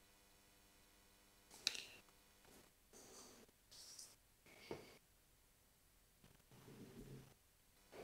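Near silence, broken by a few faint clicks from fingers tapping and handling a flip phone: one about two seconds in, a smaller one near the middle, and tiny ticks near the end.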